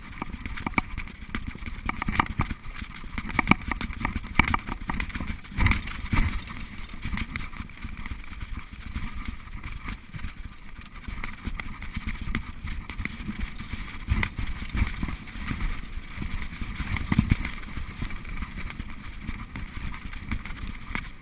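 Mountain bike riding fast down a rough dirt singletrack: a steady rumble of tyres on the trail with frequent irregular knocks and rattles from the bike over bumps, and wind buffeting the action camera's microphone.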